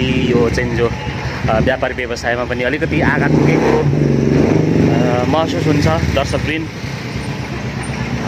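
Motorcycle engine running close by, loudest for a few seconds in the middle, over the voices of people in a busy street.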